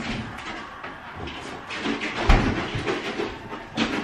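Rustling and clattering of things being handled in a kitchen, with a packet of oats being taken out. There is a sharp knock at the start, a heavy thump a little over two seconds in, and another knock just before the end.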